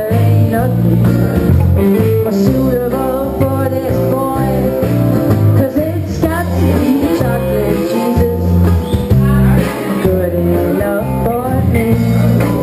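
Live band music: a woman singing with an acoustic guitar over a loud electric bass line, the bass notes changing in a steady rhythm.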